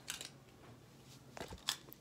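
Faint handling noise: a few small clicks and light rustles, the loudest click shortly before the end.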